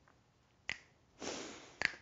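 Finger snaps keeping a steady beat, about one a second, with two sharp snaps and a soft rushing noise between them: a singer setting the tempo just before starting a song.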